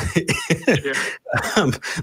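A person's voice making short, broken laughing and coughing sounds, ending in a spoken 'um'.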